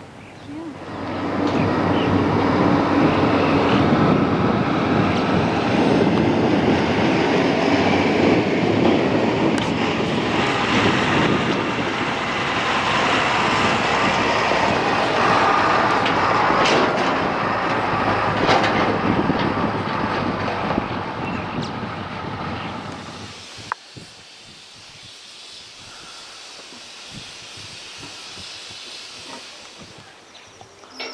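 Loud wind buffeting the microphone outdoors, a rough rumbling rush that rises about a second in and holds for over twenty seconds. It cuts off suddenly near the end and leaves a much quieter outdoor background.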